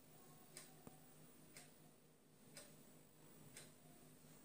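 Near silence: faint room tone with a soft, regular tick about once a second.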